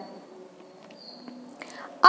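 A quiet pause in a woman's talk: faint room tone with a few small mouth clicks, and a soft intake of breath near the end.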